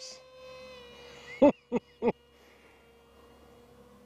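Steady whine of a small RC park jet in flight, from its 2212 2700 kV brushless outrunner motor and two-blade 6-inch Gemfan Flash 6042 prop on a 3S battery. About a second and a half in, three short, loud chuckles from the pilot break in.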